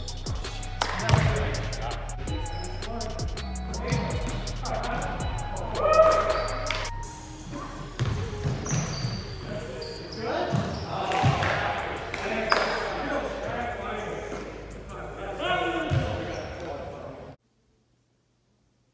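Basketball bouncing on a hardwood gym floor during a game, mixed with music that has a beat and voices. All the sound cuts off suddenly near the end.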